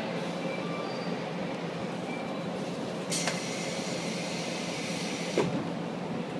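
JR West 381-series Yakumo limited express standing at the platform, its onboard equipment giving a steady low hum. About three seconds in, a loud hiss of air starts with a click and cuts off sharply with a thump a couple of seconds later.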